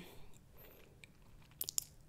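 A quiet pause with faint room tone, then a short cluster of three or four faint clicks about a second and a half in.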